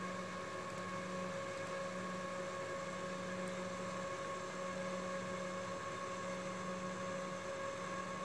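Steady hum and whir of a running desktop PC's cooling fans, with several steady tones held through it.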